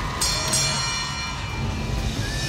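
Title-sequence sound design for a TV talent show: a low rumble under a sudden bright metallic ringing hit about a fifth of a second in, which fades over the next second or so.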